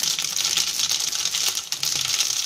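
Dried red chillies and mustard seeds frying in hot oil in an aluminium kadai: a steady sizzle with a fast, dense crackle of popping seeds, the tempering for rasam.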